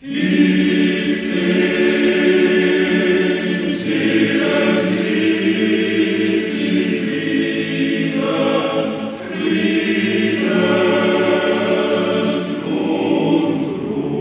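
A choir singing in sustained chords, coming in suddenly at full strength.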